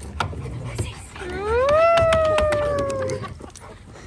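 An Alaskan malamute gives one long howl-like "woo" of about two seconds, rising in pitch and then slowly sliding down. A few light clicks fall during it.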